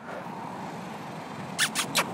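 Steady outdoor background noise, with a quick run of four or five light, sharp clicks near the end.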